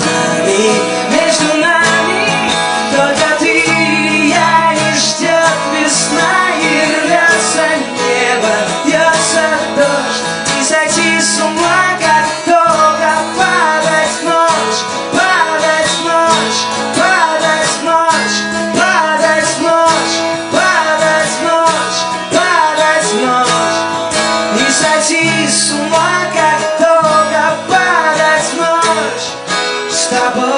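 Live acoustic guitar music: strummed guitar over a steady, repeating bass pattern, with a melody line moving above it.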